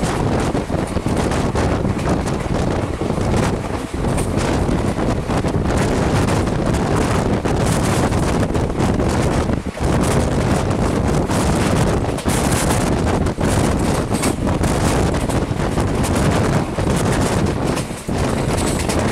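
Loud, steady wind rushing over the microphone held out of a moving express train, over the running noise of its LHB passenger coaches on the track.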